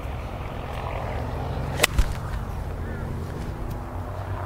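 Golf iron striking a ball on a full swing: one sharp crack of clubface on ball about two seconds in, with a low thump right after it.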